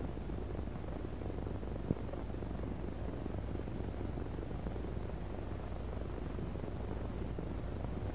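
Steady hiss and low hum of an early optical film soundtrack, with a single faint click about two seconds in.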